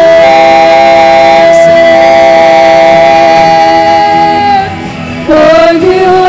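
Female worship singers holding a long note together in harmony over band accompaniment, easing off about four and a half seconds in, then starting the next phrase.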